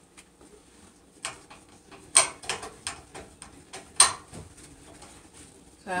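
Objects being handled and set down on a kitchen counter while it is wiped: a series of sharp knocks and clicks, the two loudest about two and four seconds in.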